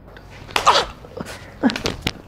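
A man's voice making a few short, sharp wordless vocal bursts: one about half a second in and a quick cluster near the end.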